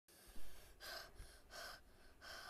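A short thump of the phone being handled, then two breaths close to the microphone, about half a second apart.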